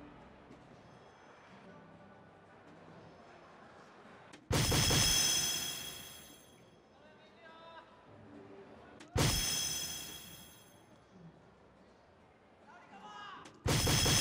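Electronic soft-tip dartboard playing its hit sound effects as darts land: a sudden loud hit with a ringing, chiming tail that fades over about a second and a half, about four and a half seconds in and again about nine seconds in, with a third starting at the very end. A low murmur from the hall between them.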